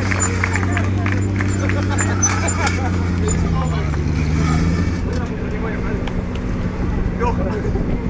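BMW's 4.4-litre V8 engine running steadily with the car standing still, its low note dropping away about five seconds in.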